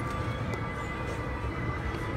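Faint background music with held notes over a steady low rumble of room noise.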